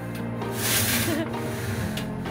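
The multi-bladed frame saw of a wind-driven paltrok sawmill cutting into a log, with a rasping stroke about halfway through, under background music.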